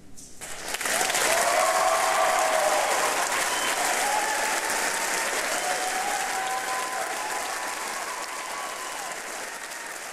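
Audience applauding with a few cheers right after the choir's song ends. The clapping swells within the first second, then slowly dies away.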